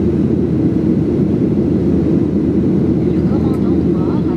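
Steady, loud roar of a WestJet Boeing 737's jet engines and airflow, heard from inside the passenger cabin in flight. Faint voices come in near the end.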